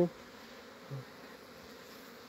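Honeybees buzzing faintly and steadily, with a short low hum about a second in.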